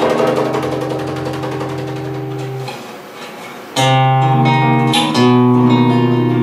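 Acoustic guitar playing chords. The first chord rings and slowly fades to a brief lull, then fresh strummed chords come in about four seconds in and again a second later.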